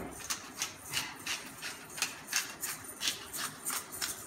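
Hand-twisted salt or pepper grinder grinding seasoning, a quick even run of crisp crunching clicks, about four a second.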